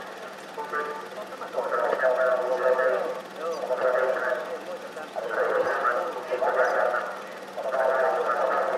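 Indistinct speech, thin and muffled with nothing above the mid range, over a steady low hum.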